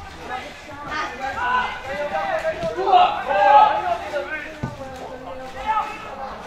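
Indistinct voices talking and calling out, with one short knock about two-thirds of the way through.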